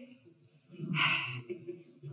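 A woman's audible breath, sigh-like and about a second long, taken at the microphone in a pause between spoken phrases.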